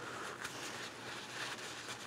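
Faint rustle and crinkle of a paper towel being rubbed by hand as an oil drain plug is wiped clean.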